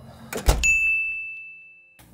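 A sound effect laid over the cut: a sharp thump about half a second in, followed by a single steady high-pitched tone that rings on and cuts off abruptly.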